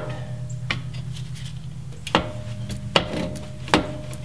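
Metal clanks as a steel adjustable track bar is worked into the axle-side bracket of a Jeep Cherokee XJ's front axle: four sharp knocks, roughly a second apart, over a steady low hum.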